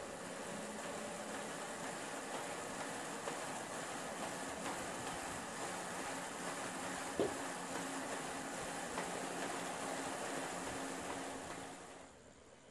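Pedal-driven bicycle drivetrain and the launcher's spinning wheels whirring steadily, with faint steady hums. A single sharp knock comes about seven seconds in.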